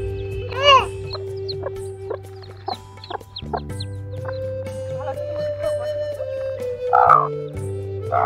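Broody hen calling: a loud squawk about a second in and a harsh cluck near the end, with newly hatched chicks peeping in short, high falling notes between them. Steady background music plays underneath.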